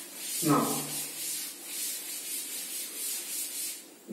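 Chalkboard duster rubbing over a chalkboard in quick, regular back-and-forth strokes as it wipes chalk writing away.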